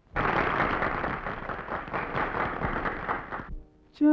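A group of people applauding for about three and a half seconds, starting suddenly and stopping abruptly. Faint held instrumental notes come in just before the end, as a song begins.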